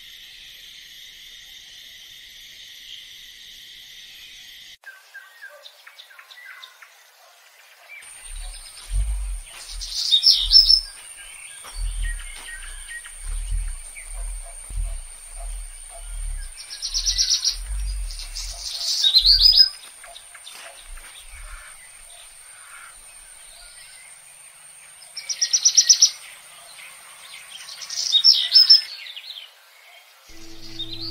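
Crickets chirping steadily for the first few seconds, then a cut to forest ambience with birds calling, several loud repeated calls standing out, over a steady high insect tone. A run of low thumps sounds in the middle stretch.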